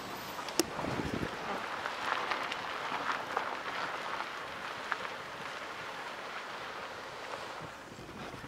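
Car rolling slowly over a rough road surface stripped of its asphalt: steady tyre and road noise heard from inside the cabin, with a sharp click about half a second in and a low thud just after.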